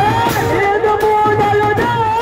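Live street band music: clarinets play a sustained, wavering melody over the beat of a large bass drum.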